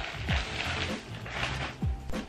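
Plastic bag rustling and crinkling in several spells as a bodysuit is pulled on over it, with background music underneath.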